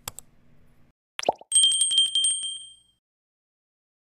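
Subscribe-button sound effects: a couple of clicks, then a quick falling pop about a second in. After it, a small notification bell rings with rapid repeated strikes for about a second and a half before fading out.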